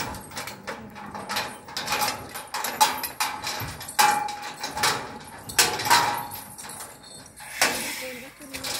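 Irregular sharp metal knocks and clanks from a livestock truck's steel cargo box with an elephant standing inside, some strikes ringing briefly.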